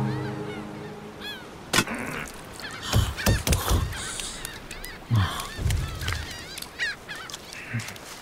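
Gulls calling over and over in short arching cries, with a few heavy thuds like footsteps on a boat deck. Music fades out at the start.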